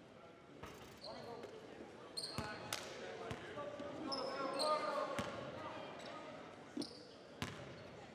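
A basketball bouncing a few times at irregular intervals on a hardwood gym floor, with sneakers squeaking and a murmur of voices echoing in a large gym.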